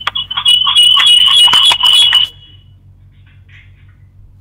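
Steady high-pitched feedback whistle on a phone-in line, with crackly, broken-up sound over it, cutting off a little over two seconds in: the caller's radio set is feeding back into the call.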